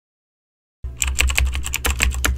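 Keyboard typing sound effect: a fast, even run of key clicks, about eight to ten a second, starting just under a second in, with a low hum underneath.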